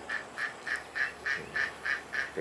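Domestic ducks quacking in a quick, even series of short nasal calls, about three or four a second.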